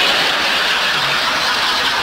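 Studio audience laughing, a loud steady wash of crowd noise.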